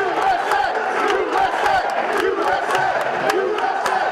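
Large crowd cheering and shouting, many voices at once, loud and sustained, with sharp claps scattered through.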